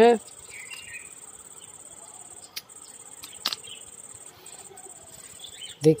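Crickets trilling steadily in a high, unbroken band, with two faint clicks about two and a half and three and a half seconds in.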